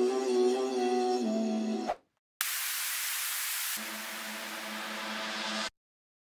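A pitched-down sampled vocal hook in a slap house track, singing held notes, cuts off about two seconds in. After a brief gap comes a steady burst of hiss-like white noise, joined about halfway by a low hum, and it stops abruptly just before the end.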